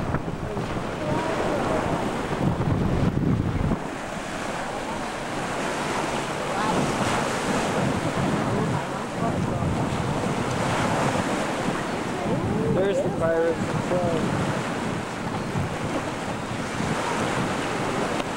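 Sea surf washing and lapping, mixed with wind buffeting the camcorder microphone. The wind rumble is heaviest in the first four seconds or so.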